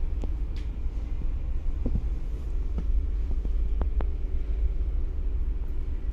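Steady low rumble of a ferry's engines heard inside a passenger cabin, with a few light clicks and rustles from a paper and plastic food wrapping being handled.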